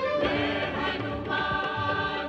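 Devotional theme music: a choir singing long held notes over instrumental accompaniment, with a few drum strikes.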